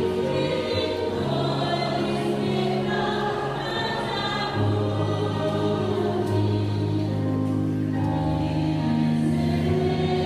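A large choir singing in long held chords over a low bass line, moving from chord to chord every second or two.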